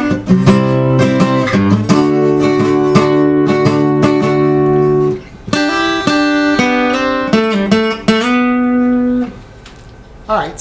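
Acoustic guitar capoed at the third fret, playing strummed chords and a short picked lick. There is a brief break about five seconds in, and the last chord rings out and fades shortly before the end.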